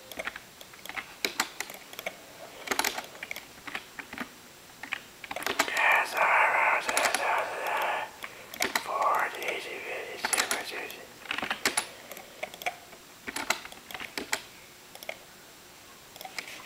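Irregular clicking of typing on a computer keyboard close to the microphone, with a muffled voice for a few seconds near the middle.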